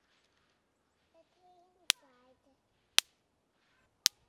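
Live electric-fence poly wire arcing to ground, giving two sharp snaps about a second apart, one for each pulse of the fence charger. The snapping shows the wire is live.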